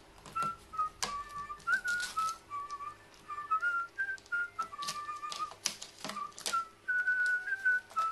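Background music carried by a whistled melody, over sharp, irregular taps and clicks of a carrion crow's beak pecking and tugging at a small wrapper on a wooden board.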